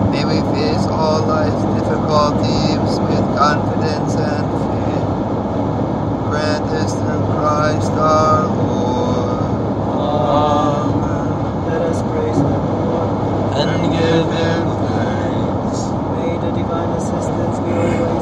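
Indistinct voices speaking a prayer, over a steady low rumble.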